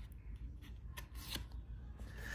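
Thick cardboard pages of a board book being turned by hand: a few faint clicks and soft rubbing.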